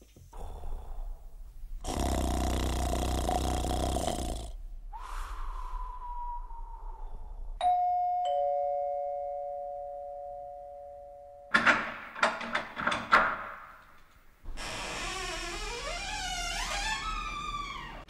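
Sound-effect interlude in a dub recording. A burst of noise is followed by a falling tone, then a two-note ding-dong doorbell chime held for about four seconds. Next comes a quick run of knocks, then wavering tones that climb in steps.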